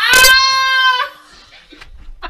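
A loud, high-pitched vocal cry held on one note, bleat-like, lasting about a second and cutting off suddenly, followed by a few faint knocks.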